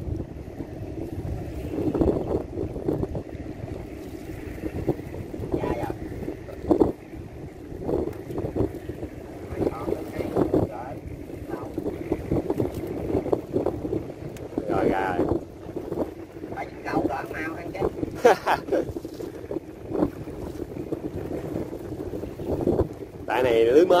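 Wind blowing on the microphone over a small boat on a river, steady throughout, with frequent short knocks and rustles as a nylon gill net is handled in the boat.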